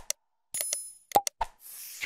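Sound effects of a subscribe-button animation. A couple of sharp clicks and pops come first, then a bell ding rings briefly about half a second in, then more clicks, and a whoosh ends it near the close.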